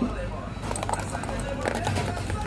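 Low talk with several sharp clicks and crinkles from handling shrink-wrapped toy tins, bunched about two-thirds of a second in and again near the end.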